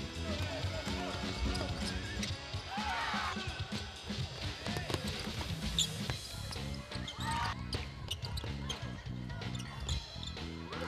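A basketball bouncing and thudding on a hardwood court in a large gym, in a run of sharp knocks, with voices calling out and music playing underneath.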